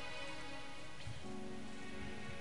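Soft background music under a pause in the preaching: quiet held chords, moving to a new chord a little over a second in.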